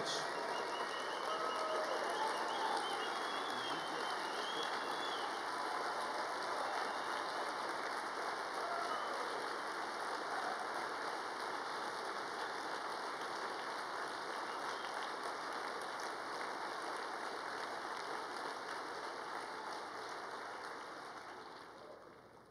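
Large audience applauding steadily, dying away near the end.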